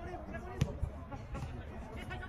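A football kicked on a grass pitch: a sharp thud a little after the start, followed by a duller thump. Players' voices call and chatter throughout.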